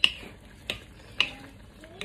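Wooden spoon stirring a saucy stew in a nonstick wok, knocking sharply against the pan three times in the first second and a half.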